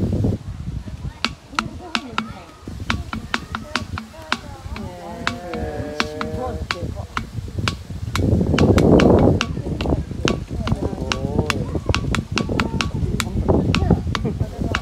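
Giant anteater feeding from a metal bowl: rapid, irregular sharp clicks and taps as its snout and tongue work against the bowl, with people talking in the background.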